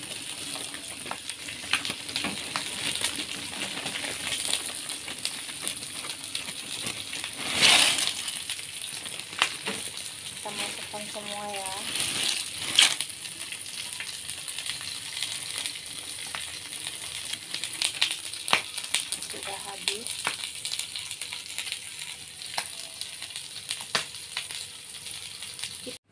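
Pot of hot water bubbling and hissing with dry fish crackers soaking in it to soften. There are scattered small clicks, and louder clatters come at about 8 and 13 seconds.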